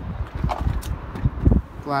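Uneven low rumbling of wind buffeting and handling noise on a handheld microphone, with a brief spoken word near the end.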